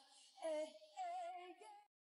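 Male K-pop idol's live singing voice in Korean, high and light, holding two notes with a wavering vibrato and almost no backing music under it. The voice cuts off suddenly just before the end.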